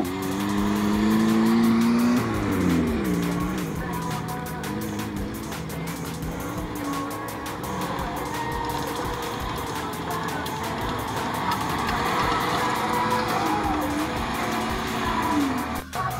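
Lada Niva engine revving hard under load on a muddy climb, its pitch rising and then dropping sharply about two seconds in. After that, off-road engines keep working at changing revs, with music underneath.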